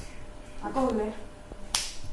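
A brief falling murmur from a boy lying in bed, then a single sharp hand smack about three-quarters of the way through.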